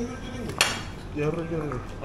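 A metal fork clinking against a plate of steak: one sharp clink just over half a second in, among other light cutlery and dish sounds. Voices talk in the background.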